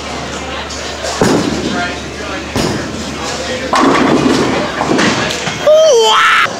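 Bowling alley din: heavy thuds of bowling balls and the clatter of pins, with a louder stretch of clatter from just before four seconds in, over background chatter from other bowlers.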